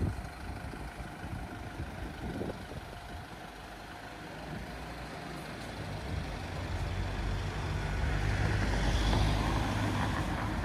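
Low engine rumble of a motor vehicle in city street traffic, building up through the second half and easing slightly near the end.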